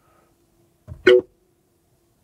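A faint steady test tone from the car's audio system holds one pitch throughout. About a second in, one short, loud sound cuts across it.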